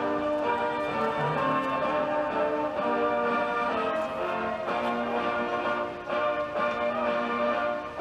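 Orchestral music with brass, playing held chords that change about every second.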